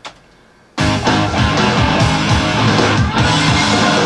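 A take of loud rock music on electric guitar, starting abruptly just under a second in.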